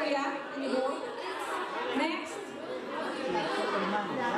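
A woman speaking into a microphone over a PA system, with chatter from other people in a large hall.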